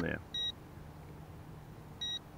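A single short, high electronic beep from a Humminbird fish finder about half a second in, over a faint steady low hum.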